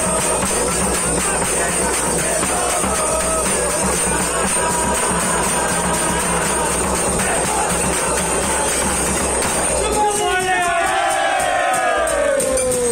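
Group of men singing festive Phagwa songs to a stick-beaten bass drum, with small hand cymbals and clapping. Near the end the drum drops out and the voices carry on alone.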